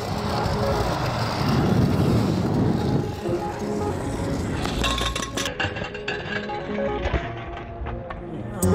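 Music playing over the rolling rumble of stunt scooter wheels on asphalt, then a few sharp clacks about five seconds in. After that, music alone.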